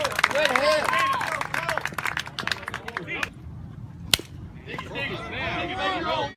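Players and spectators at a baseball game calling out and shouting, with scattered claps. A single sharp crack about four seconds in, during a lull in the voices.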